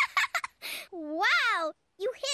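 A cartoon character's voice: a few short, choppy bursts like giggling, then a long wordless cry that rises and falls in pitch.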